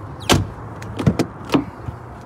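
A car door on a 2003 Mercury Grand Marquis shutting with a thump, then a few sharp latch clicks about a second in as the rear door handle is pulled and the door opens.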